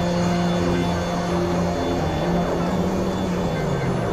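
Experimental electronic synthesizer drone: held low notes layered over a dense, noisy, industrial texture, with the bass note moving to a new pitch about halfway through.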